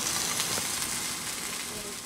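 Smoked sausage links and sausage patties sizzling on a Blackstone gas griddle, a steady frying hiss that fades down toward the end.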